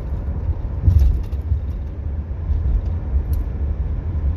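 Pickup truck running, heard from inside the cab: a low, steady rumble, a little louder about a second in.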